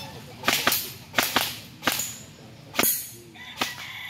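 A rapid string of airgun shots: about seven sharp cracks in quick, uneven succession, some in close pairs, which likely include pellets striking the steel plate targets.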